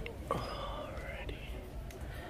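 Indistinct, soft voices over a steady low background hum, with a brief higher-pitched voice-like sound about half a second in.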